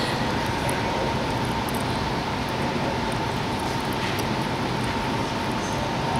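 Steady noise of ventilation fans running in a large hall, with a faint high steady whine.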